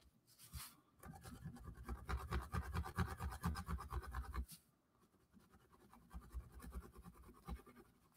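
Colored pencil shading on cardboard: faint, rapid back-and-forth scratching strokes that stop about four and a half seconds in, then a few more scattered strokes after a short pause.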